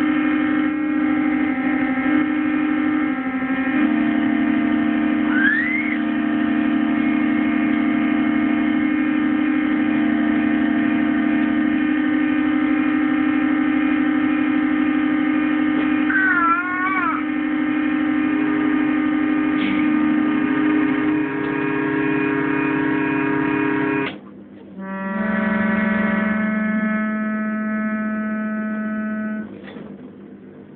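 Small electric organ with chord buttons held down by a baby's hands, sounding a sustained cluster of notes that shift as keys are pressed and released. It stops briefly about 24 seconds in, then another cluster sounds until just before the end.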